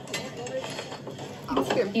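Light metal clinks from a blacksmith working at a forge, under quiet background, with a young man's voice starting about three-quarters of the way in.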